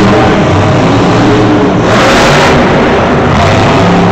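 Monster truck's supercharged V8 revving hard as it drives over the dirt, loud throughout, with a brief louder rush of noise about two seconds in.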